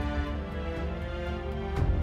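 Background music: sustained chords over a low pulsing beat, with a brief swell near the end.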